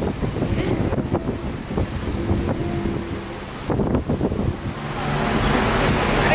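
Low rumbling noise from the camera's microphone being handled or buffeted, with faint voices and knocks underneath. About five seconds in, a steady hiss of group hand-clapping rises and grows louder as the cake is being cut.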